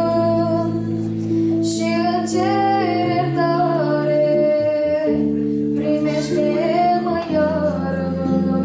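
A woman singing a Romanian Christian song into a microphone, holding long, gliding notes over an instrumental accompaniment with guitar.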